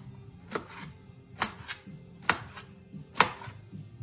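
A large kitchen knife chopping fresh pineapple into chunks on a cutting board: four sharp cuts about a second apart, each striking the board.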